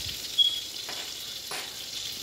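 A fork clinking and scraping in a bowl as raw eggs are stirred, with one sharp clink about half a second in and a few lighter ones after. A steady high hiss runs underneath.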